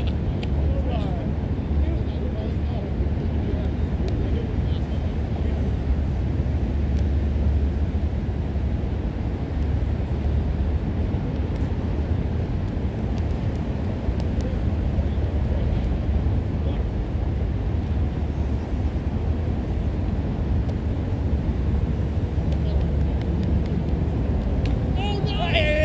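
Steady low outdoor rumble with faint voices of players now and then, and a few light knocks.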